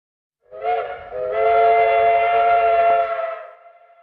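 A horn-like chord of several steady tones held together. It begins about half a second in with a short note, sustains, then fades out near the end.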